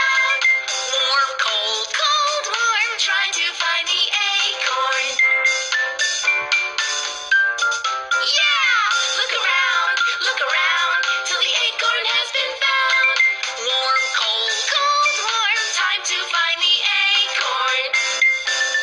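Cartoon theme song: music with high-pitched singing.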